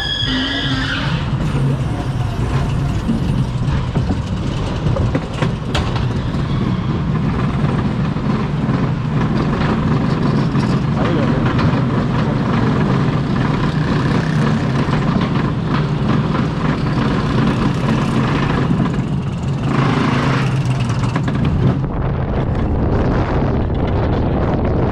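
Mack Rides wild mouse coaster car rolling out of the station and climbing the chain lift hill: a steady mechanical rumble and clatter of the lift heard from the car, with scattered clicks and a brief rise in hiss near the end.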